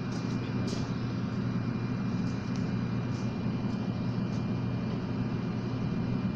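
Steady low machine hum that holds at one pitch, with a faint thin high tone above it.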